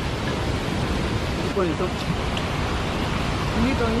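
Steady, loud rushing of fast-flowing stream water, an even noise throughout, with a couple of short spoken words over it.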